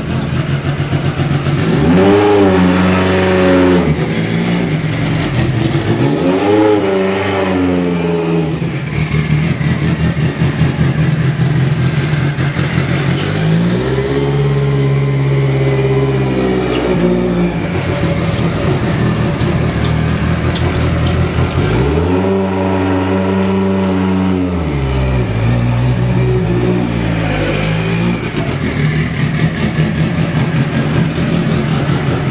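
Lancia Delta S4 rally car's engine idling and being revved five times, each rev rising and falling back to a steady idle.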